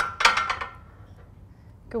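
Loaded barbell racked onto the metal uprights of a flat bench: a sharp metal clank with a few clinks and a brief ring, over in under a second.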